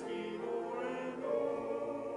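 A congregation and a row of men at the front singing a hymn together in held notes. The notes change about a second and a half in.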